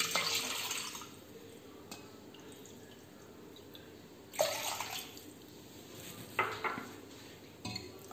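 Water poured from a glass bowl into a steel pot of curd, twice: a short splashing pour at the start and a second pour about four seconds later.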